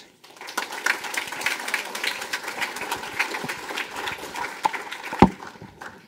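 A small audience clapping, a dense patter of hand claps that fades out near the end. A single sharp knock, the loudest sound, comes about five seconds in.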